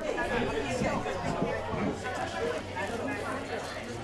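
Indistinct chatter of several people talking at once in a room, overlapping voices with no single clear speaker.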